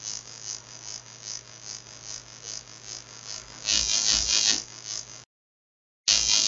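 Low, steady electrical mains hum with faint background hiss from the recording setup. About four seconds in there is a brief louder sound, and about a second before the end the audio cuts to total silence.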